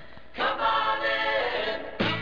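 A group of voices singing a Coca-Cola commercial jingle in harmony, coming in about half a second in and holding a chord.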